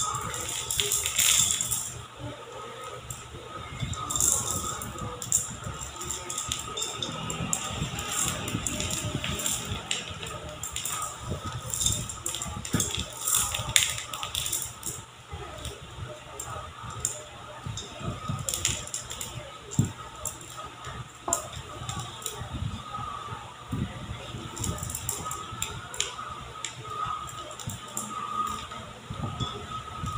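Silicone spatula scraping and knocking against a stainless steel mixing bowl as stiff cookie dough with chocolate chips and walnuts is folded, in irregular scrapes and light knocks.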